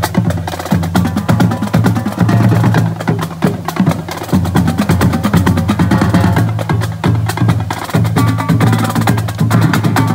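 Marching drumline playing a cadence on snare drums, tenor quads and bass drums: dense, rapid stick strokes and rolls over deep bass drum hits.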